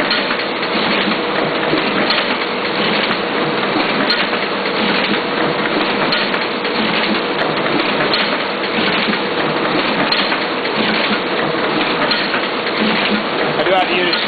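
Duplo DBM-4000 booklet maker running at speed: a steady mechanical clatter of paper feeding and stitching, with a regular beat and a faint steady hum. The stitch head is putting in a single stitch per booklet, with no sign of the repeated-stitch fault that a bad stitcher clutch or solenoid would cause.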